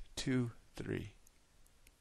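A man's voice speaking briefly in the first second, with a sharp click at the start, then near silence.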